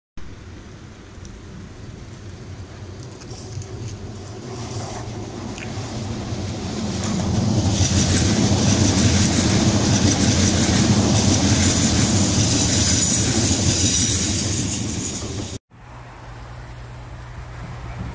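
London Overground Class 378 electric train passing close by on the third-rail DC line. The sound of wheels on rails builds over several seconds, stays loud for about eight seconds, then cuts off suddenly.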